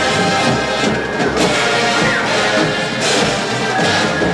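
High school marching band playing its field show: brass ensemble with drumline, loud and continuous.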